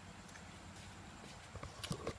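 Faint low background with a few light, sharp clicks near the end.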